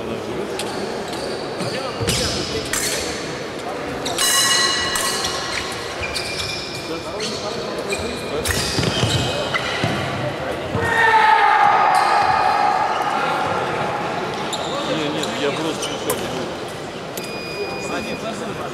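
Echoing large-hall ambience: scattered sharp knocks and ringing metallic clanks, with distant voices. A louder held tone with overtones comes about eleven seconds in.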